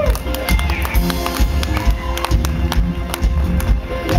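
Live band music: drum kit and bass playing a steady, busy beat, with no singing.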